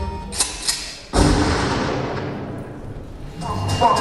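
Two short knocks, then about a second in a loud sudden thump that dies away over about two seconds in a large hall. Music picks up again near the end.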